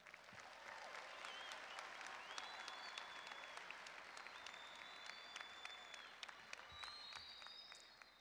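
Large audience applauding, with scattered cheers and a few long high whistles over the clapping.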